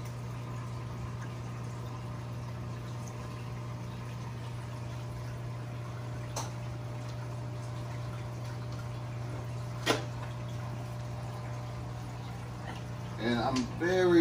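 Steady low hum of running aquarium pumps and filters, with a faint click about six seconds in and a sharper click near ten seconds. A man's voice starts near the end.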